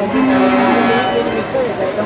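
A single steady, low horn note lasting just under a second, over the chatter of a crowd.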